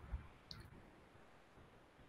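Near silence with one faint, short click about half a second in.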